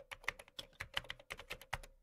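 Rapid computer-keyboard typing, about six or seven key clicks a second, stopping abruptly once the line is finished.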